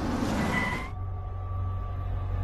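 Car rolling up and braking to a stop, with a short rising squeal; the car noise cuts off abruptly just under a second in. A low, steady music drone follows.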